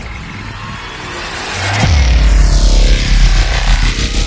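Electronic intro music with sound effects: a rising swell, then a deep bass hit about two seconds in that carries on as a heavy low rumble, with a sweeping whoosh near the end.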